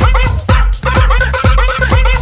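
Electronic remix built from a small dog's bark sample, chopped and pitched into a rapid melody of short bark notes over a regular kick-drum and bass beat.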